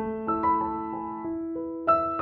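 Background music: a slow, gentle piano melody, its notes struck one after another and left ringing over each other.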